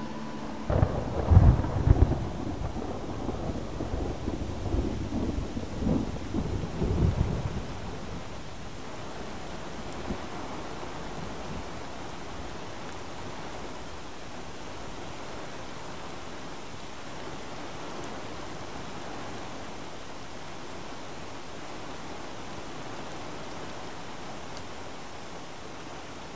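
Rolling thunder rumbles over steady rain for the first several seconds, then only the steady hiss of rain continues.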